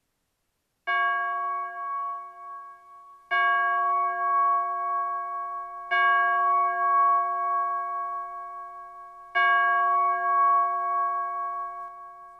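A hanging metal bell struck four times by its rope-pulled clapper, a few seconds apart, each stroke ringing on and fading slowly until the next.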